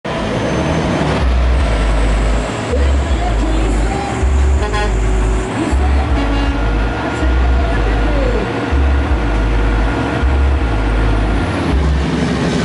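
Loud public-address sound with a heavy bass beat thumping regularly about once a second, mixed with voices.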